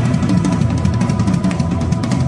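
Drum kit played live with the band: a fast, dense run of strokes on the snare and toms over a steady bass drum, with the band's held notes underneath.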